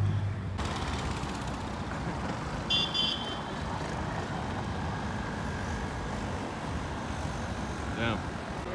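Steady city traffic noise as cars and vans drive past on a cobbled roundabout, with a short high-pitched beep about three seconds in.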